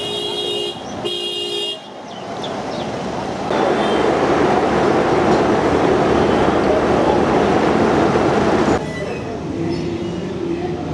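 Two short vehicle-horn honks, then about five seconds of louder traffic noise that stops abruptly, with a faint horn again near the end.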